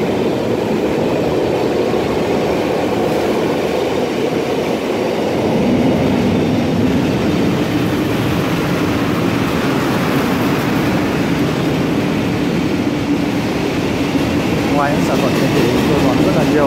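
A train passing on the railway line that runs alongside: a loud, steady running noise that swells slightly about five seconds in.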